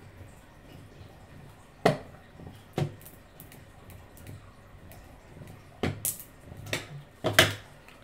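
A hand brayer rolling over vinyl on transfer tape on a hard tabletop. Mostly quiet, with several sharp taps and clicks; the loudest is near the end.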